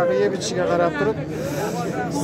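People talking: men's voices speaking in the background, with no other distinct sound standing out.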